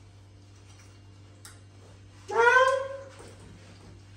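A single high, drawn-out, meow-like cry lasting under a second, about halfway through, rising and then falling in pitch.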